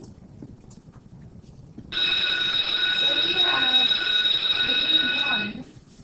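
A loud, steady alarm-like ringing tone made of several pitches held together, starting about two seconds in and cutting off after about three and a half seconds, with faint voices beneath it.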